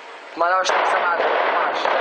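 A tank's main gun firing at a distance: a sudden loud report about half a second in, then loud, steady noise that carries on. A man's voice speaks over the start of it.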